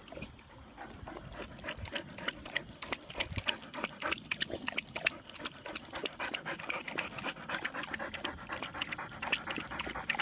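Boxer dog lapping and slurping water at the spout of a doggy drinking fountain: a fast, irregular run of short wet clicks and laps.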